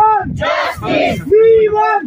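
A protest chant led by one man and answered by a crowd. He shouts a slogan as a long held call, and many voices shout the reply back together.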